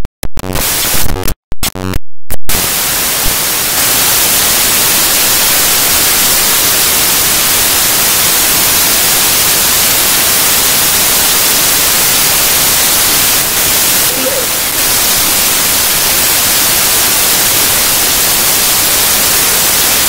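Audio-track fault: the sound breaks up into choppy fragments with dead gaps for about two seconds, then gives way to loud, steady static hiss like white noise that drowns everything else out.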